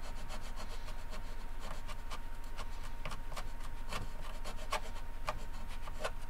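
Small razor saw cutting a notch in a guitar's wooden back reinforcement strip (back graft) with short, quick strokes, about three or four a second.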